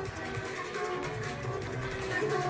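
Background workout music with a steady beat.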